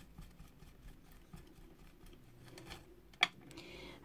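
Faint scraping and light ticks as a metal spatula smooshes wax into wool fibres, then one sharp click about three seconds in as the spatula is set down on the work board.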